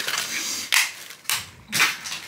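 Plastic bag crinkling as it is handled and pulled open, with three sharp rustles about half a second apart.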